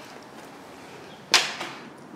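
A single sharp knock about a second and a half in, with a lighter knock just after, over a quiet background.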